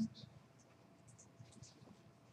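Faint, scattered scratching and small handling noises in a room, a few short scratches a second.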